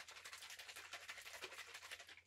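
A 100 ml plastic bottle of freshly mixed e-liquid shaken fast by hand to blend base, flavouring and nicotine shots. It makes a faint, quick, even rhythm of short rustling strokes.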